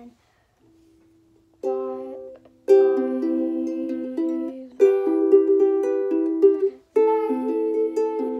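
Ukulele played in slow strummed chords, each left to ring. After a near-silent start with one faint held note, a chord sounds about a second and a half in, and three more follow every couple of seconds.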